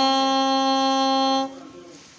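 Yamaha Venova YVS-100 soprano, a plastic single-reed wind instrument, holding one long steady note that stops abruptly about one and a half seconds in, leaving faint room sound.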